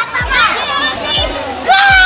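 Children shouting and chattering, with a loud high-pitched shout near the end, over background music with a repeating beat.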